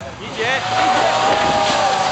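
Opel Astra GSi rally car's engine running loud, its pitch rising and falling, with spectators shouting over it.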